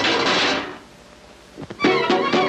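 Orchestral cartoon score ending on a loud crash that dies away within about a second. After a short hush come a couple of sharp knocks, and the orchestra starts again near the end.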